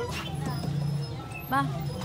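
Young children's voices at play, with one short, high, rising-and-falling call about one and a half seconds in, over a low steady hum in the first half.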